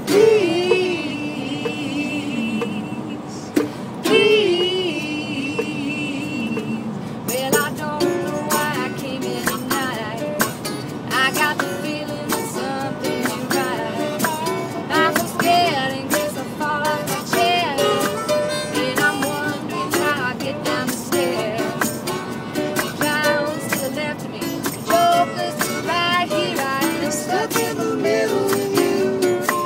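A small acoustic band playing a rock song: strummed acoustic guitar under a held, wavering melody line for the first several seconds, then from about seven seconds in a busier, denser rhythm of quick strums and percussive hits.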